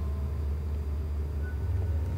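A steady low drone or rumble with no speech over it.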